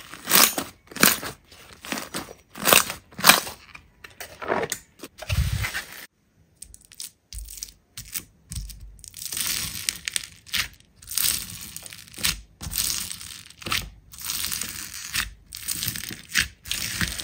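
Hands squeezing and poking soft slime, pressing out trapped air in a string of sharp, sticky pops. After a short pause about six seconds in, hands press and knead crunchy slime packed with foam beads, which crackle and crunch steadily.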